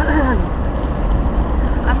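Steady low rumble of a moving car's road and engine noise heard inside the cabin, with a brief vocal sound at the start and a throat clear near the end.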